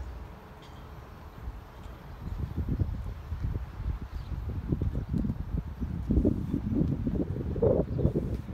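Wind buffeting the phone's microphone in low, irregular gusts that grow stronger from about two seconds in.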